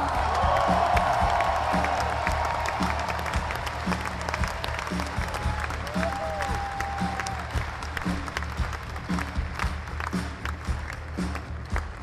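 Large concert crowd applauding and cheering, loudest at the start and slowly dying down, with scattered claps and music continuing quietly underneath.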